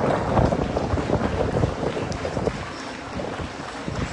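Wind buffeting the microphone in an open-air stadium: an irregular, rumbling noise that eases off somewhat toward the end.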